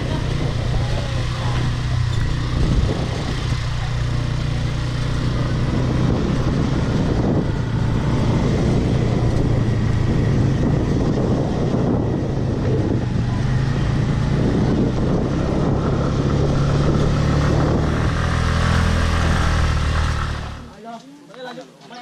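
Motor scooter engine running steadily while riding, with heavy wind rush on the microphone. The sound stops abruptly near the end, giving way to a much quieter street scene.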